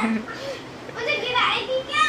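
Children squealing and calling out at play, with high-pitched voices from about a second in to the end.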